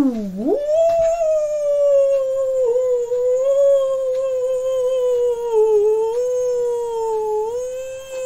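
A long howl: after a quick swoop down and back up at the start, it holds one slightly wavering pitch for about seven seconds.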